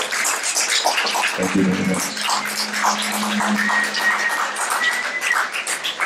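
Audience clapping after a song ends, with a high, steady whistle held for about three seconds in the middle.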